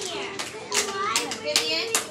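A group of young children chattering in a small room, with a few scattered hand claps.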